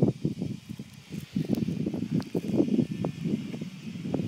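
Irregular rustling and buffeting from wind and handling on a handheld camera's microphone, in short uneven bursts.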